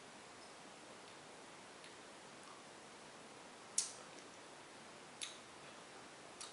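Near silence: faint steady room hiss, broken by two short sharp clicks, the first about four seconds in and the louder, the second a second and a half later.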